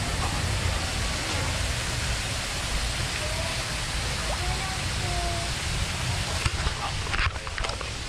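Steady rumble and hiss of a small open tour boat cruising along a canal, with a few sharp knocks about seven seconds in.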